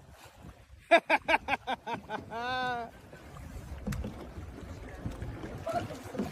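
A person laughing in a quick run of about seven short pulses, followed by a brief drawn-out vocal exclamation; after that, only low wind and water noise.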